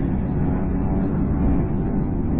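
A steady, deep rumble from the soundtrack, with faint held tones above it.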